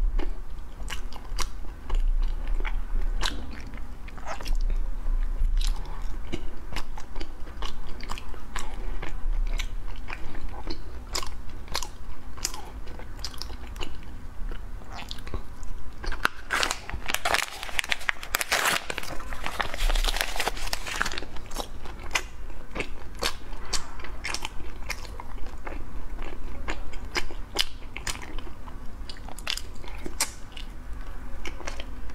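Close-miked chewing of soft pastry, with many small wet clicks and lip smacks. Partway through there is a few seconds of louder crinkling as a plastic packet holding a pastry is handled and torn open, and then chewing resumes.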